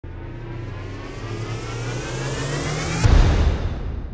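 Intro sound effect: a swelling whoosh with a rising whine that builds for about three seconds, then breaks into a deep boom that fades away.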